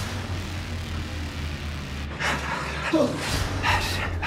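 A steady low hum under a faint hiss. About two seconds in come several heavy, breathy exhalations, then a short voiced 'oh' and a laugh near the end.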